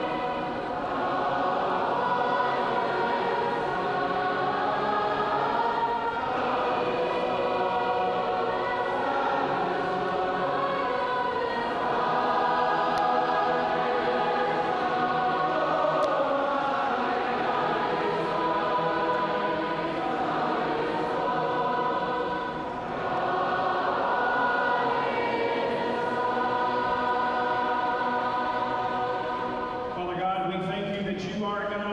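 A large group of voices singing a praise song together, sustained sung phrases without a break.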